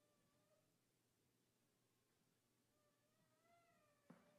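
Near silence: the footage plays with essentially no sound, only a faint hiss.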